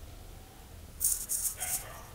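Saree fabric rustling as it is lifted and handled, a few short crisp swishes about a second in.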